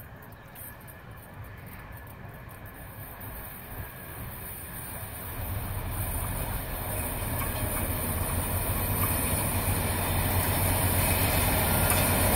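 Two red DB diesel-hydraulic locomotives, the lead one class 215, hauling a freight train toward the listener: the engine hum and rail noise grow steadily louder throughout, the low engine drone strengthening from about halfway.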